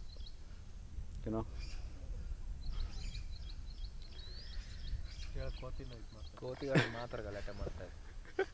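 Quiet open-air ambience: a low wind rumble on the microphone under birds chirping in quick runs of short, high repeated notes, once at the start and again from about three to five seconds in.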